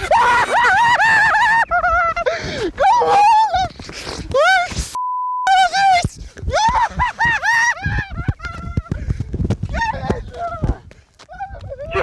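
Excited, jubilant shouting and yelling from men celebrating. About five seconds in, a short one-tone censor bleep covers a swear word.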